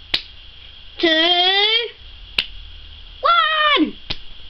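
A child counting down "two… one!" in a drawn-out voice, with two sharp clicks, one just at the start and one about halfway between the words.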